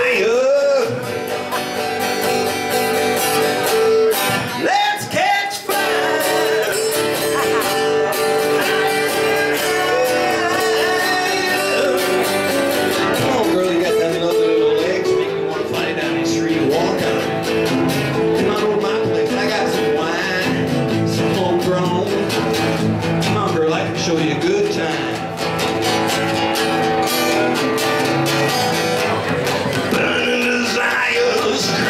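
Two acoustic guitars playing a song together live, strummed and picked, in a stretch without sung words.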